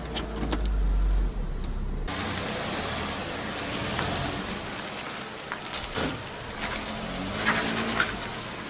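A low in-cabin car rumble that cuts off abruptly about two seconds in, then a red Mitsubishi Eclipse Spyder convertible's engine and its tyres hissing on wet pavement as it pulls away, with a few sharp clicks.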